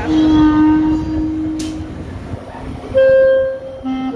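Accordion playing quadrilha music in long held notes: a low note for about two seconds, then a louder, higher note about three seconds in.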